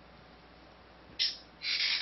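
Quiet room tone through the microphone, then a short hiss about a second in and a longer one near the end, like a person breathing in sharply just before speaking.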